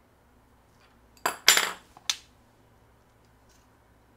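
A short burst of metallic clinking and clatter about a second in, with one more clink half a second later: metal hand tools knocking together as they are handled against a vise.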